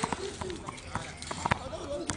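Tennis balls being struck and bouncing on a court: a string of irregular sharp knocks, about half a dozen in two seconds, with voices in the background.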